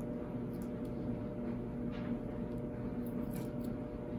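Steady low hum in the room, with a few faint small clicks from fingers working at the cap of a small ink bottle.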